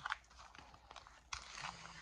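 Faint lip-smacking and crunching mouth sounds: grains of sugar from a sugar-and-honey lip scrub being worked off the lips and out of the mouth, as small scattered clicks with a short scratchy stretch in the second second.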